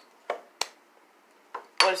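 A coin being tossed and caught by hand: two short metallic clicks about a third of a second apart.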